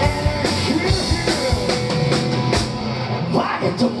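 Rock band playing live, with electric guitar, bass guitar and a drum kit keeping a steady beat.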